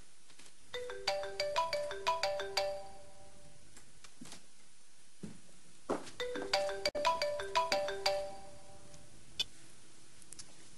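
Telephone ringing with a melodic ringtone: two rings, each a quick run of notes lasting about two seconds, about three seconds apart, signalling an incoming call.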